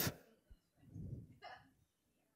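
A quiet pause with a faint low murmur about a second in, then one very short, faint vocal sound from someone in the room.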